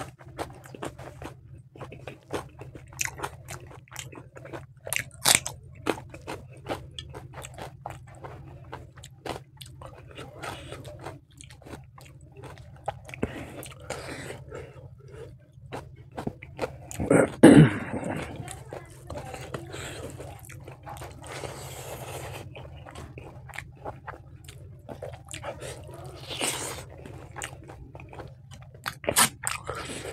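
Close-miked chewing of a person eating rice, spicy pork ribs and gravy, with many wet clicks and crunches from the mouth. One louder, deeper mouth sound comes a little past halfway.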